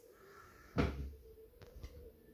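A single dull thump about three-quarters of a second in, followed by a couple of faint clicks.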